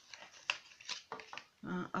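A few light clicks and rustles from a cardboard cosmetics box and a plastic lash-serum tube being handled.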